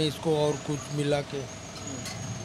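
A man speaking briefly in Hindi, then a quieter stretch of steady background noise.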